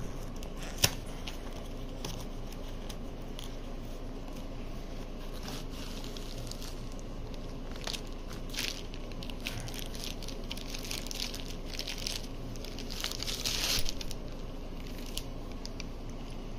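Tool packaging being opened by hand: a cardboard box and clear plastic sleeve crinkling and rustling in scattered short crackles, with a sharp click about a second in and a louder stretch of crinkling near the end.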